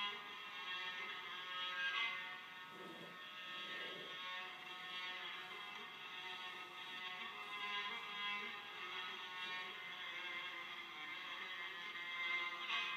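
Background music of sustained, held tones.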